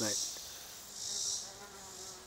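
Chorus of insects: a steady high-pitched buzzing that swells briefly at the start and again about a second in.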